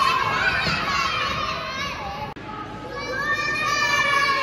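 A group of young children shouting and cheering excitedly in a large gym hall. The sound breaks off abruptly a little over two seconds in, and another group of children's cheering voices follows.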